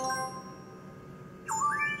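IGT Enchanted Unicorn slot machine's electronic sound effects: the last notes of a win tune fading out, then, about one and a half seconds in, a quick run of chime tones rising in pitch.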